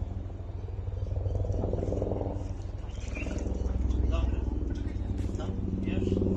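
A steady low motor hum, with faint, indistinct voices over it.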